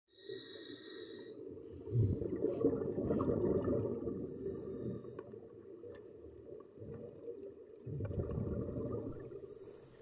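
Breathing through a scuba regulator in air: short hissing inhales through the second stage alternating with longer, lower exhales, about two full breaths.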